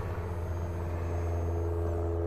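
Hydraulic generator slide on a diesel-pusher motorhome running as it pushes the generator tray out: a steady low hum from the pump with a few higher steady tones over it.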